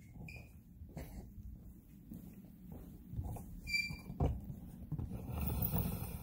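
Handling noise and footsteps from a phone camera being carried across a room. There are a few soft knocks, two brief high squeaks and a low rumble that grows louder near the end.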